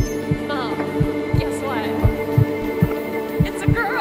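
A heartbeat sound effect in a film soundtrack, beating about twice a second over a steady droning music pad, as the smart mirror flags a change at a breast self-exam. Short wavering electronic tones sound three times over it.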